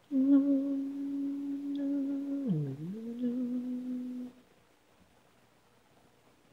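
An a cappella voice humming a long held note, with a quick slide down in pitch and back up about two and a half seconds in, stopping a little over four seconds in.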